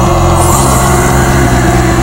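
Loud, dense metal music: sustained chords held over a low drone, changing chord just after the start.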